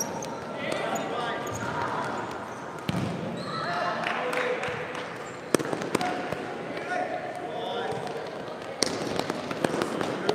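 Futsal ball being kicked on a hard indoor court, a few sharp knocks with the loudest about halfway through, among players' shouts and calls echoing in the hall.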